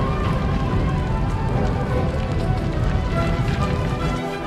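Film score music over a dense, steady low rumble of fire and destruction sound effects as flames sweep across a burning siege machine.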